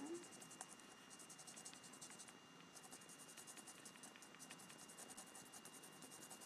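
Faint, quick repeated strokes of a Distress marker's brush tip scratching over a rubber stamp as it is coloured in, with a steady faint high tone underneath.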